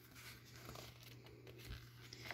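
Near silence: faint room tone with a low steady hum and faint handling of catalog paper.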